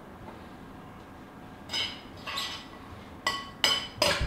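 Metal spoon clinking against a glass mixing bowl while a ground-turkey mixture is tossed. The first couple of seconds are quiet, then come about four short ringing clinks.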